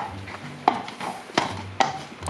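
Footsteps and a horse's hooves on hard ground: three sharp knocks, over a faint low hum.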